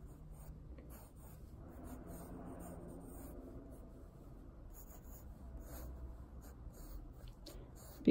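A wooden pencil sketching on sketchbook paper, faint, in short irregular strokes.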